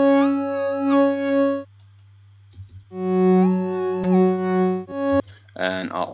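Alchemy additive synth patch playing sustained notes whose upper harmonics step up and down in pitch, as an MSEG envelope modulates the wave's symmetry (duty cycle). A note, a pause of about a second, a second note and a brief third note, then a voice starts near the end.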